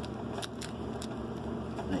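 Faint, sharp clicks from a Vespa PX 200 ignition switch as its key is turned and handled, a few of them about half a second to a second in and again near the end, over steady background noise.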